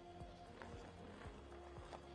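Faint music with steady held notes, over scattered faint low knocks.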